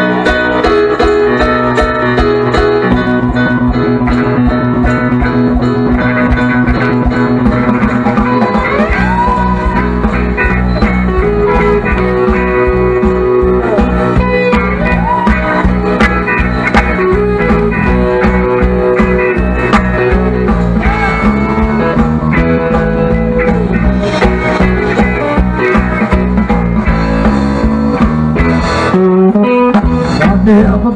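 Live blues band playing an instrumental shuffle on electric guitars, bass, drums and keyboard, with the lead guitar bending notes. The low end fills out about eight seconds in.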